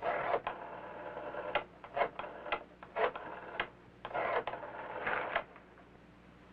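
Rotary-dial wall telephone being dialled: the dial is pulled round and whirs back about seven times, one short mechanical whirr with clicks per digit.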